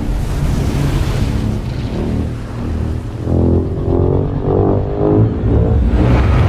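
Movie-trailer sound mix: a loud rushing surge of sea water over a deep rumble, then, from about halfway through, swelling dramatic music building up.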